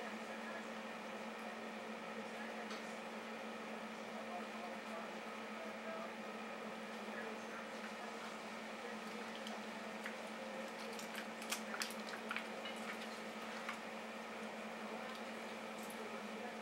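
Aquarium filter running: a steady low hum with a faint watery bubbling. A few sharp clicks come about eleven to twelve seconds in.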